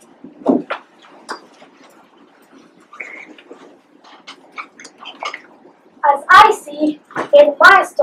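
A child speaking loudly from about six seconds in, after a stretch of faint murmuring and scattered small sounds in the room.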